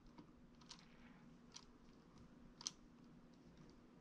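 Near silence with a few faint, irregular clicks as fingers press and handle a small piece of Plasticine modelling clay, the sharpest about two and a half seconds in, over a low room hum.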